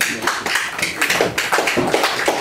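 Hands clapping in a quick, steady rhythm, several sharp claps a second.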